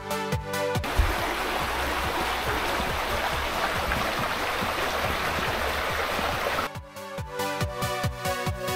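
Shallow rocky creek running over stones for about six seconds, with background electronic music and a steady beat for about the first second and again near the end.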